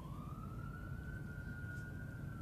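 A distant siren: one faint tone rises in pitch over about the first second, then holds steady.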